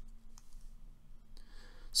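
A few faint, sharp clicks, then a short breath in near the end.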